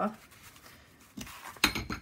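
Linen fabric being torn by hand: a short, sharp ripping crackle near the end, after a faint rasp as the tear starts.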